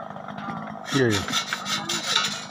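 Short rasping, rustling scrapes in quick succession, starting about halfway through, with a voice saying 'iya, iya'.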